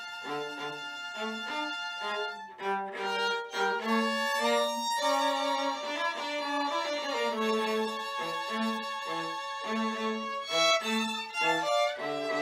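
Trio of violins playing chamber music together. A lower part repeats short notes in a steady pulse while the upper parts carry sustained melodic lines.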